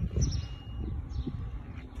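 A few faint high bird chirps over a low, steady outdoor rumble.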